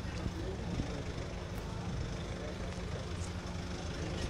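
Passenger van's engine idling close by, a steady low hum, with faint voices in the background.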